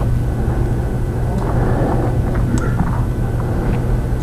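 A steady low background hum, with a few faint light clicks as steel router bits are moved and set down on a paper-covered table.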